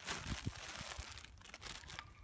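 A bag crinkling and rustling as hands rummage in it, with a few soft knocks.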